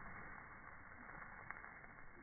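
Faint, even outdoor background noise, slowed down with the slow-motion picture, with one small click about one and a half seconds in.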